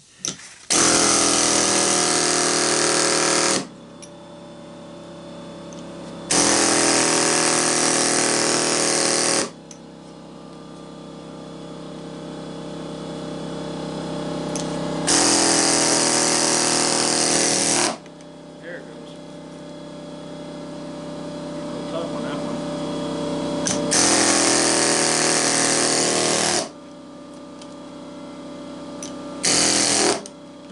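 Pneumatic air chisel hammering in bursts of about three seconds, four times over with a fifth starting near the end, working a window AC fan motor apart to free its copper windings. A quieter steady hum fills the gaps between bursts.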